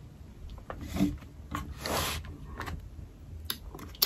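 A person chewing a bite of Japanese plum (sumomo), with soft wet mouth clicks and smacks coming now and then.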